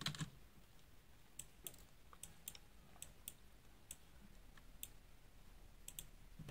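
About ten faint, irregularly spaced clicks of a computer keyboard and mouse being used, over near-silent room tone.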